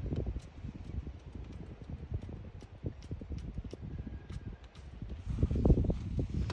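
Wind buffeting the microphone: an uneven low rumble that swells and fades, with a stronger gust near the end.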